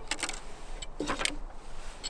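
Light clicks and clatter of shattered vinyl record pieces being handled on a turntable platter, with a short soft vocal sound about a second in.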